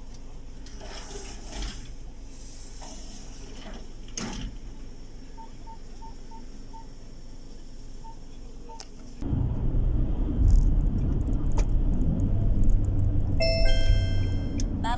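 Inside a car: a quiet low idle hum with a short run of soft electronic beeps, then about nine seconds in a sudden change to the much louder rumble of the car driving on the road, with a short electronic chime near the end.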